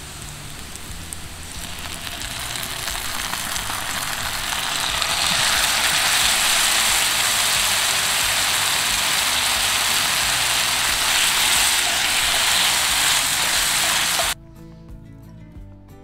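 Mushroom strips, onions and peppers sizzling in a cast-iron skillet over campfire coals. The sizzle grows louder over the first few seconds as barbecue sauce goes into the hot pan, holds steady, then cuts off suddenly near the end.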